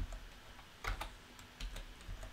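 Computer keyboard keystrokes, a few faint separate taps, as a spreadsheet formula is typed and entered.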